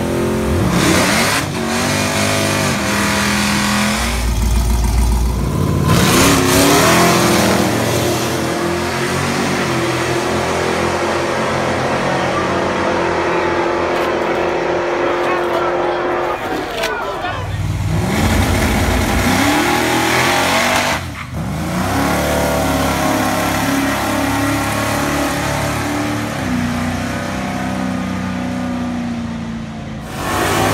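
Drag-race car engines revving hard and accelerating away down the strip, in several short runs cut together, with crowd voices underneath.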